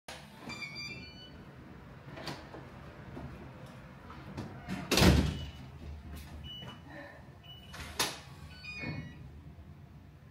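Apartment front door with an electronic keypad lock: a few short high beeps near the start, scattered clicks, a loud door thud about five seconds in, and a smaller knock about eight seconds in.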